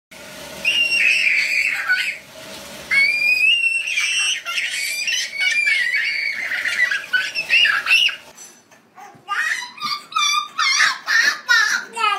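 A toddler squealing and shrieking with laughter in long high-pitched stretches, then a run of short giggles over the last few seconds.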